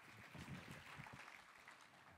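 Near silence: hall room tone with faint, off-microphone voices.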